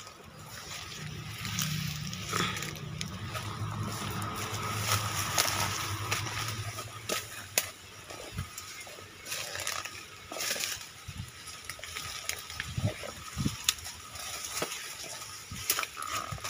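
Rustling leaves and crackling dry twigs and grass as a person pushes through dense undergrowth on foot, with irregular snaps and crunches.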